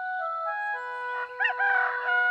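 Gentle flute music with held notes, and a rooster crowing once in the second half, marking daybreak.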